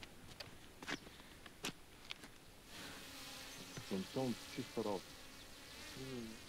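Quadcopter drone flying overhead, its propellers giving a thin, high buzz that sets in a little under three seconds in and carries on.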